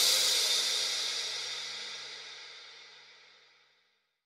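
Background music ending on a cymbal crash that rings out and fades away over about three seconds.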